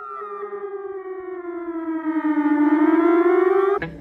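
A sustained electronic, siren-like tone with rich overtones, sliding slowly down in pitch and then back up while it swells. About three and three-quarter seconds in, a band strikes in with sharp guitar chords.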